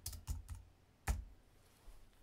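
Keystrokes on a computer keyboard: a few quick key taps near the start and a single firmer tap about a second in.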